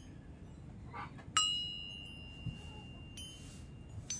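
A single metallic clink about a second and a half in, from a hanging metal medallion knocking against another metal piece. It rings on as a clear high tone for nearly two seconds and is stopped short by a second light click.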